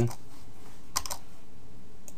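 Computer keyboard keys pressed, a quick cluster of clicks about a second in, over a steady low hum.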